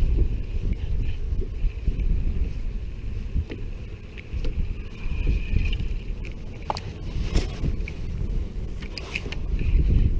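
Wind buffeting the microphone, a heavy, uneven low rumble. A few sharp light clicks come near the end.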